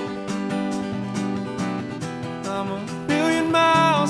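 Country song played live: acoustic guitar strummed in a steady rhythm between sung lines, with a singing voice coming back in about three seconds in.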